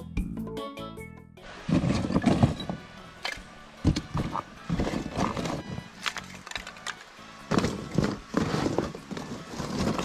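A brief stretch of background music that cuts off, then irregular clattering and rustling as lumps of hardwood charcoal are handled and set down on a pile, with a cardboard box being rummaged.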